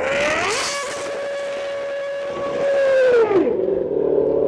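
Red Bull RB8 Formula One car's 2.4-litre Renault V8 engine revving up and held at high revs, then dropping back a little after three seconds in.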